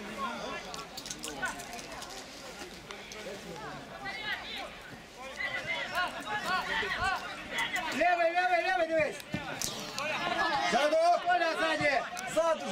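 Several men's voices talking and calling out, fainter at first and then growing louder, with loud held shouts from about eight seconds in.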